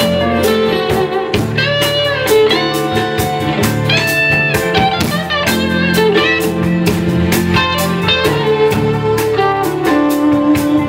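Live band playing an instrumental passage with no vocals: electric guitar lines over keys, with drums keeping a steady beat.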